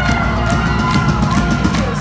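Live pop band playing loud through a club PA system, heard from within the audience, with a steady rhythmic drum beat under the music.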